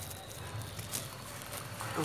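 Faint scraping and light knocks of a wooden stick stirring caustic soda dissolving in water in a plastic jar, over a low steady hum.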